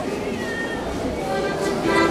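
A high-pitched voice sliding in pitch, with stronger wavering tones in the second half.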